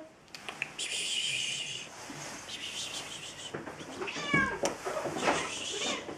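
Kittens mewing: a long high-pitched cry about a second in, a fainter one soon after, and a short falling mew just past the middle.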